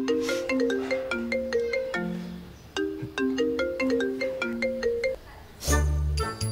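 Mobile phone ringing with a melodic ringtone, a short tune of quick notes that plays twice with a brief pause between.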